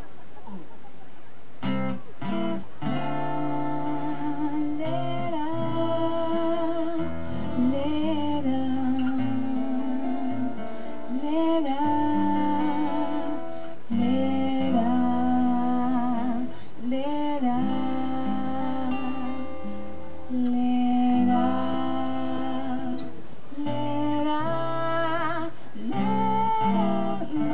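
Amplified acoustic guitar picking and strumming a song's introduction, coming in about two seconds in, with a woman's voice singing long held notes with vibrato over it.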